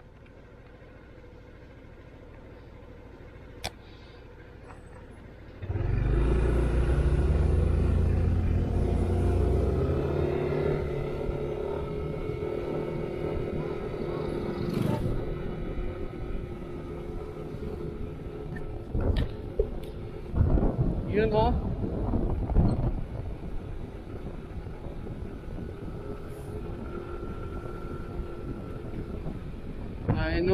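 Yamaha NMAX 155 scooter under way, its engine running beneath heavy wind rumble on the camera mic; the rumble jumps loud about six seconds in as the scooter gets moving. A person's voice is heard briefly past the middle.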